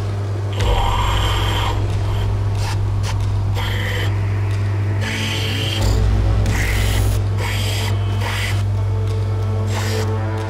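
Rough seam opal ground against a coarse wet lapidary grinding wheel: the machine's motor hums steadily while the stone rasps on the wheel in repeated short passes, several times, as the potch is ground off its top toward the colour bar.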